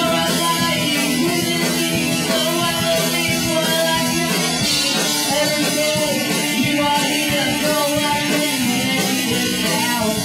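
A rock band playing a song live, with drum kit and a singer singing into a microphone.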